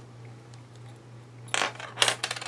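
Quiet room with a steady low hum, then about one and a half seconds in a short clatter of small hard objects knocking together as things are picked up and handled on the craft table.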